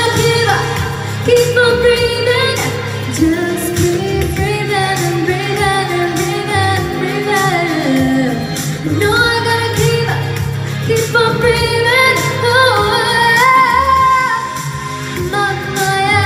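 A woman singing a pop song into a handheld microphone over a backing track with a steady bass line and beat; her voice moves in long, winding runs.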